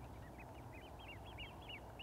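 A bird's faint, rapid chirping: a string of thin, short calls, each rising then falling in pitch, about seven a second.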